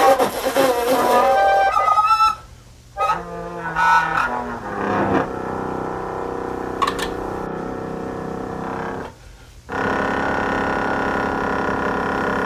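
The Honkpipe, a homemade mouth-blown tube horn, played in three honking phrases. The first slides and wobbles in pitch, the second steps between several notes, and after a short gap a single steady note is held until the end.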